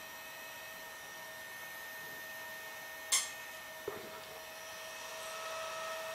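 Small cooling fan of a Fostex D1624 hard-disk recorder running with a steady whine, handled over felt pads on the metal hard-drive housing. There is a click about three seconds in, and near the end the hum grows a little louder with an added tone as the fan rests on the housing. The housing resonates with the fan's vibration, which is the cause of the unit's fan noise.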